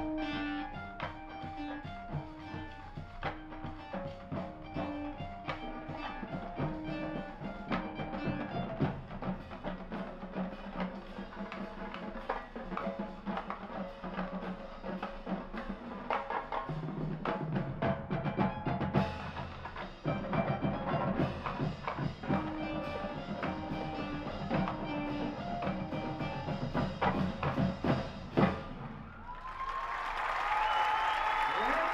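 College marching band playing on the field: brass and woodwinds over a drumline, with a short figure of notes repeated again and again over the drums in the first third and again about three-quarters of the way through.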